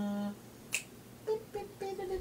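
A drawn-out 'uh' trails off, then a single sharp click sounds about three-quarters of a second in, followed by faint short vocal sounds.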